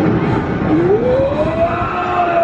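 Swinging pirate-ship ride's drive giving a single whine that rises in pitch and levels off near the end, over a steady rumble of the running ride.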